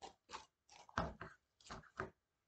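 Pink slime being squeezed and worked in the hands: a run of about six short, noisy squishes, the loudest about a second in.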